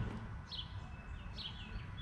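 A few faint, short bird chirps, each a quick downward glide, about half a second in and again near the middle, over a quiet background.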